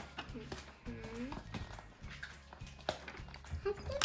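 Quiet handling of small plastic doll accessories on a table: a few light clicks and taps. A short hummed voice sound comes about a second in.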